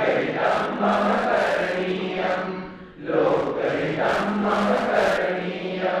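A man chanting a Sanskrit song in a melodic, held voice, in two long phrases with a breath between them about three seconds in.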